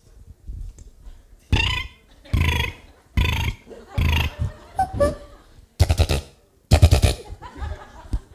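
Loud, short, burp-like vocal noises made by a beatboxer, about one a second from about a second and a half in; the last two are rougher and rattling, and the loudest.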